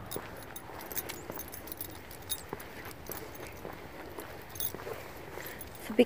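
Light metallic jingling of small metal pieces, in short scattered clinks, over soft walking sounds.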